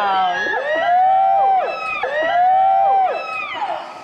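A group of people teasingly going "ooooh" together in drawn-out calls that rise and fall, twice, reacting to a kiss.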